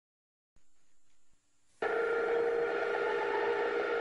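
A steady electronic tone of several pitches held together, coming in suddenly about two seconds in after a brief faint tone.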